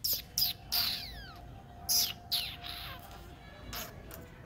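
A street dog whining at a gate: a run of short, high-pitched cries that each fall in pitch, about six in four seconds, the sound of a hungry dog begging.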